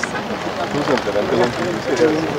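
Men talking together in a group, over a steady background noise.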